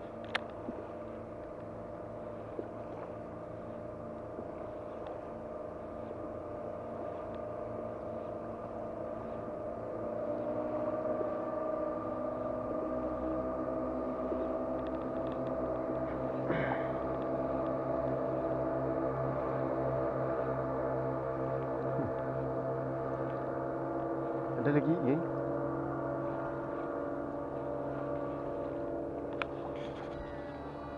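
A steady motor drone made of several held tones, growing louder about ten seconds in.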